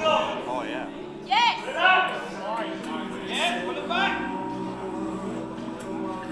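Background music playing in a large hall, with audience members shouting short, high-pitched calls of encouragement to the posing competitors.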